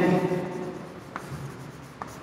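Chalk writing on a chalkboard: faint scratching strokes, with a light tap of the chalk about a second in.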